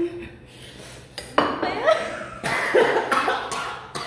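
A man and a woman laughing and coughing in bursts from the heat of very spicy instant noodles, starting with a sharp knock about a second and a half in, with dishes clattering on the table.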